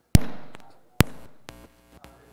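Two loud pops through the PA loudspeakers, about a second apart, each fading out, followed by a short electrical buzz near the end: the sound of audio connections being made while the video's sound is being set up.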